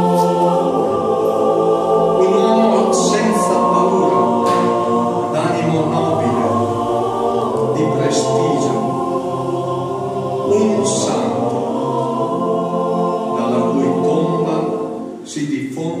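An a cappella choir singing long, slowly changing chords.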